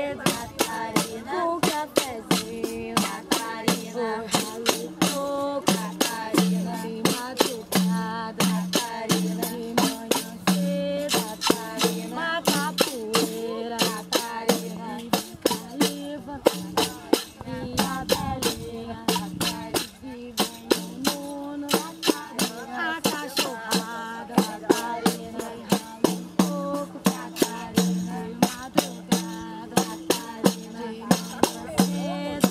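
Pandeiros, Brazilian jingled tambourines, beaten in a steady capoeira rhythm of about three strikes a second, with voices singing along.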